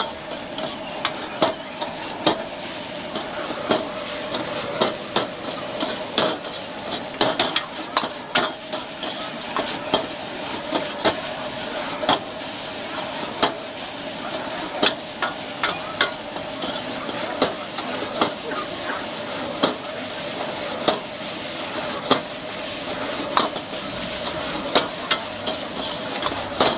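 Rice vermicelli stir-frying in a wok over a gas burner: a steady sizzling hiss, broken by irregular sharp clanks and scrapes of the metal spatula against the wok, about one or two a second.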